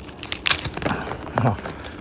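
Banana flower stalk snapping as a banana heart is broken off the plant by hand: a sharp crack about half a second in, with smaller cracks around it.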